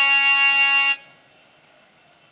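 Electronic keyboard holding a single steady note for about a second, then the key is released and the note stops, leaving only faint hiss.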